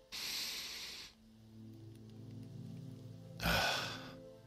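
A person drawing one deep, audible breath in for about a second, with a second breath sound, most likely the breath out, near the end. Soft sustained background music plays between them.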